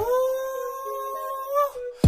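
A break in a Kenyan hip-hop track where the beat drops out and a single long held note sounds, its pitch bending up slightly near the end.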